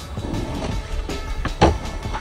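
Skateboard wheels rolling on concrete with a steady low rumble, and one sharp clack of the board about one and a half seconds in.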